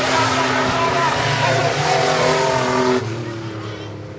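Engines of several speedway sedans racing on a dirt track, running together at high revs and fading about three seconds in as the pack moves away.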